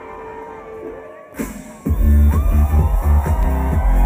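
Electronic dance music played by a DJ over loudspeakers. A quieter break with little bass is cut by a sudden rush of noise about one and a half seconds in, and the full track drops back in with a heavy, steady bass beat about two seconds in.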